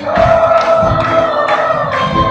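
Live worship music: a group of voices singing held notes over a band with a steady beat, about two strikes a second.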